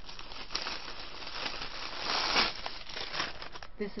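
Clear plastic gift wrapping crinkling as it is handled and pulled open by hand. The crinkling is loudest in a burst about two seconds in.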